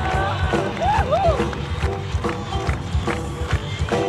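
A live blues-rock band playing. Lead guitar notes bend and waver about a second in, over a steady drum beat and bass.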